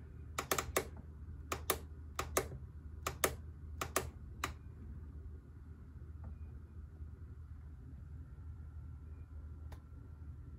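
Plastic push buttons on a Mr. Coffee programmable 12-cup coffee maker clicking as they are pressed to set the clock, mostly a pair of clicks per press, about one press every 0.7 s. The clicking stops about halfway through, leaving a faint low hum and one last faint click near the end.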